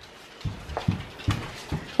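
A dog's short, irregular bursts of heavy breathing, about five in under two seconds, as it moves with a child's weight on its back.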